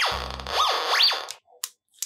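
Cartoon-style alarm effect for a toy hand-held metal detector wand: about three rising-and-falling whistling sweeps over a hiss, with background music. It cuts off about a second and a half in, followed by a few light clicks.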